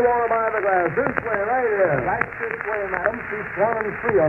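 Speech from an old radio broadcast recording, thin and narrow-band.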